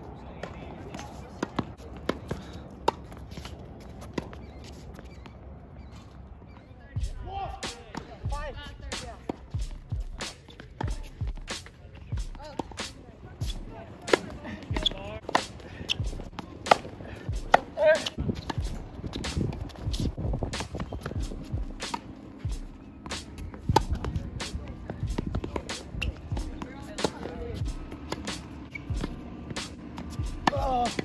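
Tennis balls struck by racquets and bouncing on a hard court, sharp pops coming every second or so at uneven intervals.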